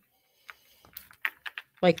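Small beads clicking against each other as they are threaded onto beading wire and pushed down it: a quick, uneven run of light clicks.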